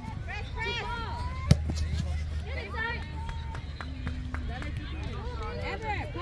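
Voices calling out across an outdoor field, none close enough to make out, over a steady low rumble. About a second and a half in, one sharp knock stands out as the loudest sound.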